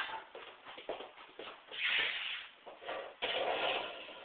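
Shuffling, rustling handling noises with scattered small clicks, and two longer rustles, one about two seconds in and one near the end.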